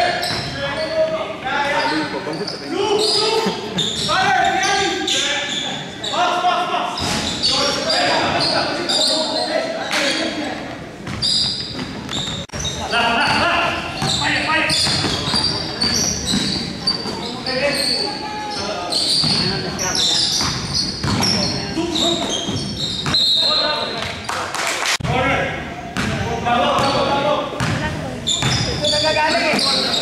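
Basketball game sounds in a large gym: a ball dribbled on a hardwood court, with repeated short knocks, under indistinct shouting and voices of players and spectators, echoing in the hall.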